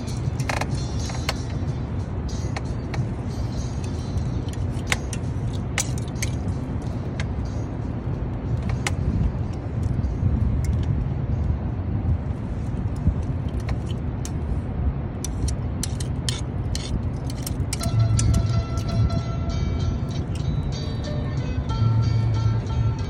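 Steady low rumble with many scattered sharp metallic clicks and clinks, like hand tools and safety-harness hardware being handled, under background music.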